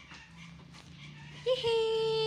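A dog whining: one steady, high whine starting about one and a half seconds in, the excited sound of a dog waiting to be fed.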